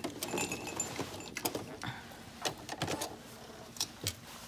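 Scattered light clicks and cloth rustling as a sewn cotton mask is pulled free from under a sewing machine's presser foot and handled.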